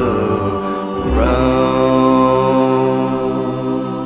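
The closing chord of a 1960s hot-rod pop song. About a second in, the band and group vocals land on a final chord and hold it as one long note.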